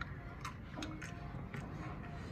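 Faint, irregular crisp clicks of snack chips being bitten and crunched while eating.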